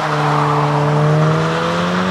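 Volkswagen Golf GTI Mk8's 2.0 TSI turbocharged four-cylinder pulling away under acceleration, its engine note climbing steadily in pitch with tyre and road noise underneath.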